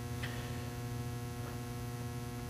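Steady electrical mains hum, a low buzz with a stack of even overtones, at a constant level.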